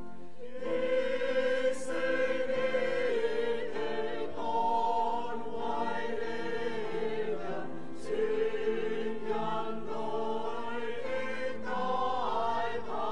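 A group of voices singing a slow hymn together, holding long notes.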